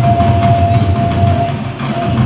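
Live folk music over loudspeakers: a side-blown flute holds one long note over steady drumming. The note stops about three-quarters of the way through while the drumming goes on.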